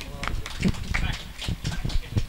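Soft, indistinct talk with a scatter of irregular light clicks and knocks.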